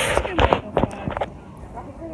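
A young woman's voice: short spoken or laughing sounds in the first second or so, then a lull with only low room noise.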